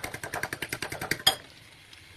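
A fork beating eggs in a ceramic bowl: rapid, even clicking of the fork against the bowl, about a dozen strokes a second, which stops about a second and a half in.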